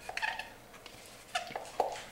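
Spatula scraping cottage cheese out of a plastic tub into a glass bowl: a few short scrapes and squeaks, with two sharper knocks in the second half.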